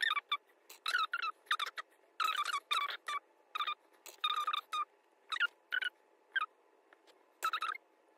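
Sped-up, chipmunk-pitched talking: a quick run of short, squeaky voice syllables with brief gaps, thinning out near the end.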